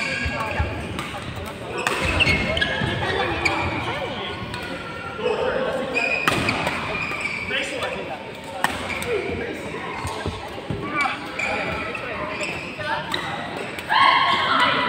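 Badminton doubles rally: sharp smacks of rackets hitting the shuttlecock, several times, and squeaks of court shoes on the sports mat as players lunge and turn.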